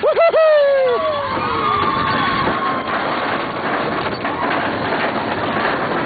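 Big Thunder Mountain Railroad mine-train roller coaster running at speed, with the steady rattle and wind rush of the moving train. At the start riders let out a loud 'whoo' that falls in pitch and fades over about a second and a half.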